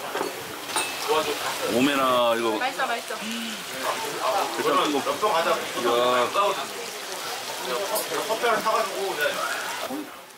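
Beef large intestine (daechang) sizzling on a tabletop grill pan as a steady hiss, under voices talking throughout.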